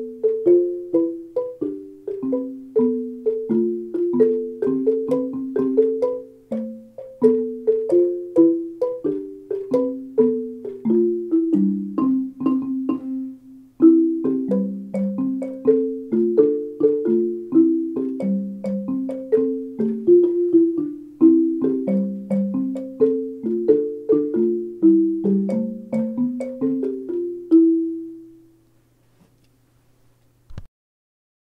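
Classroom alto and bass xylophones played together with mallets: an even, repeating pattern of wooden mallet strokes on low and middle notes. There is a brief break about halfway through, and the piece ends with a final low note ringing out and fading a couple of seconds before the end.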